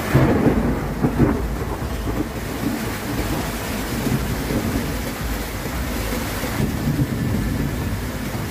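Fast-flowing floodwater rushing along a street in heavy rain: a loud, continuous wash of noise with a deep rumble, swelling in a few stronger surges in the first second and a half.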